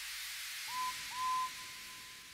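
Steam locomotive whistle giving two short toots, the second longer, over a steady hiss of escaping steam that slowly fades.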